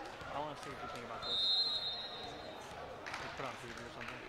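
Gymnasium ambience during a volleyball rally: faint voices of players and spectators echoing in the hall and ball impacts on the hardwood court. About a second in, a steady high whistle sounds for over a second, typical of the referee's whistle that signals a serve.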